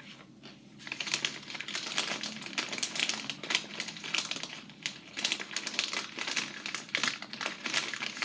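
Plastic snack-chip bag crinkling and rustling as a hand rummages in it and handles it. This gives a dense run of fast, crackly clicks that starts about a second in.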